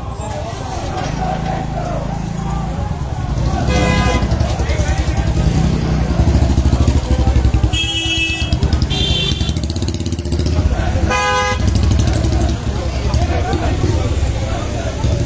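Busy street crowd with indistinct voices and a low engine rumble, punctuated by four short vehicle-horn toots: one about four seconds in, two close together around eight to nine seconds, and one near eleven seconds.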